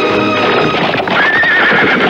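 Horses galloping, a fast run of hoofbeats on dirt, with a wavering horse whinny about halfway through, over background film music.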